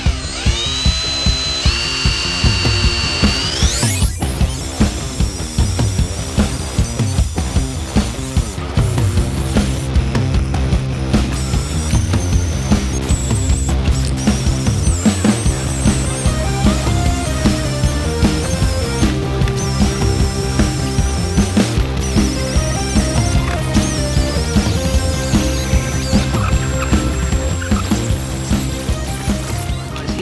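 Cordless die grinder whining as it grinds out the ports of a cast-iron two-stroke cylinder. Its pitch rises steeply as it spins up in the first few seconds and wavers under load after that. Background music with a steady beat plays over it.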